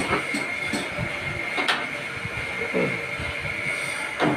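Workshop machinery running with a steady high whine, with a few sharp metal knocks as a steel mould is handled, the loudest about a second and a half in.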